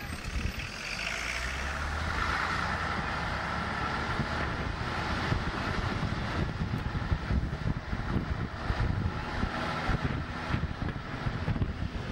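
Open-top bus driving, its engine running with a whine that drops in pitch over the first few seconds, while wind buffets the microphone throughout.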